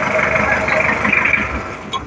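Mahindra jeep's engine running with a steady drone as it is eased back a little, easing off slightly near the end.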